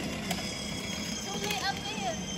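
Quiet voices over a steady outdoor background noise, with a short snatch of talk or laughter near the end.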